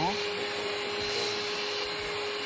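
Steady hum of a small electric motor, a kitchen appliance running at constant speed, with a constant high whine over it.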